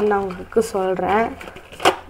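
A woman's voice speaking, with one sharp click near the end.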